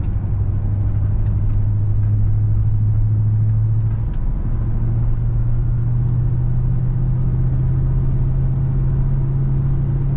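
Car engine and tyre noise heard from inside the cabin while driving: a steady low drone that dips briefly about four seconds in and then carries on a step higher in pitch.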